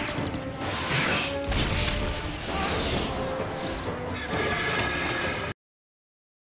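Action-scene film soundtrack: music mixed with crash and whoosh sound effects. It cuts off suddenly about five and a half seconds in.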